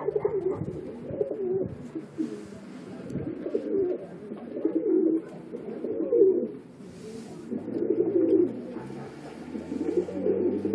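Domestic pigeons cooing in a small tiled room, low warbling coos following one another every second or so.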